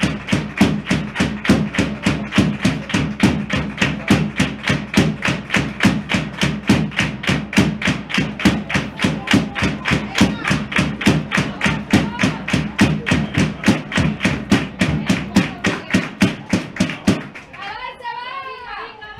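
Rhythmic hand-clapping in an even beat of about three to four claps a second, stopping shortly before the end.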